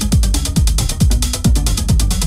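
Techno playing in a DJ mix: a four-on-the-floor kick drum a little over twice a second, each kick dropping in pitch, under fast clicking hi-hats and short synth notes.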